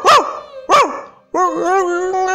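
A dog barking twice in short, sharp barks, then a long, drawn-out wavering cry that sets in about two-thirds of the way through.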